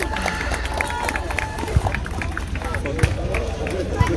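Amateur boxing bout in the ring: many short high squeaks through the whole stretch, and two sharp thuds, a little under two seconds in and again about three seconds in, over crowd voices.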